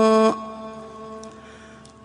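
A man's unaccompanied chanting voice holding one long note at the end of a line of an Arabic Ramadan tasbih, which breaks off about a third of a second in; a faint tail of the note dies away after it.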